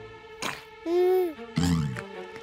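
Cartoon squirrel vocal sound effects: a click about half a second in, then a short buzzy hum that rises and falls, then a brief falling grunt.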